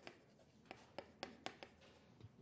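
Chalk writing on a chalkboard: a string of faint, short taps and scratches as the characters are stroked out, most of them in the second half.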